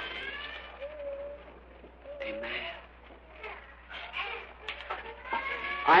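A young child's high, thin cry from the audience: two short wails, about a second in and again a little over two seconds in.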